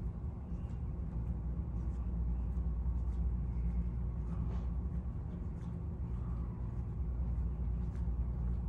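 Steady low hum and rumble of a room ventilation system, with a few faint soft clicks.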